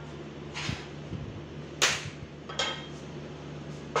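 A metal frying pan knocking and scraping on the gas burner's grate: four short clanks, the loudest about two seconds in, over a steady low hum.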